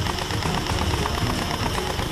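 An electric gel blaster firing on full auto, its gearbox cycling in a rapid, even mechanical rattle.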